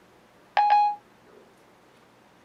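A single short electronic chime from an iPhone 4S's Siri, about half a second in: the tone Siri gives when it stops listening after a spoken question. It is one steady pitched note lasting under half a second, and no spoken answer follows because Siri is failing to connect to the network.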